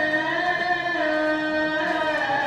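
A man's voice chanting a prayer in long, drawn-out melodic notes, with a pitch change about a second in.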